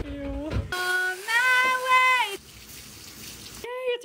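A voice sings a short phrase ending on one held note, then about a second of faint, even rushing noise like running water.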